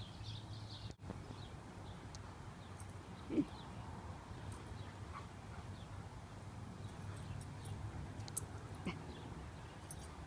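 Two dogs, one a Siberian husky, play-wrestling: faint scuffling with a few light ticks, and one short louder low sound about three and a half seconds in.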